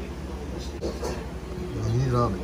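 Restaurant room tone: a steady low hum, with faint voices in the background. Near the end comes a short vocal sound that falls in pitch.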